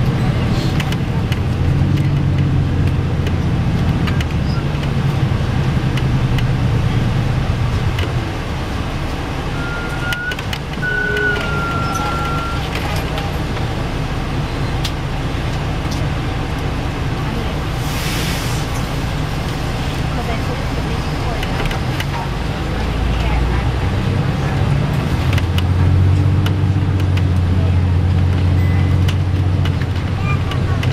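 Engine and drivetrain hum of an MCI D4000 coach bus heard from inside the passenger cabin, louder at first, easing off, then louder again over the last few seconds as the bus pulls harder. A short hiss of air cuts in about halfway through.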